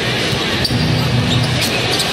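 A basketball dribbled on a hardwood court, with a few sharp bounces over a steady low hum.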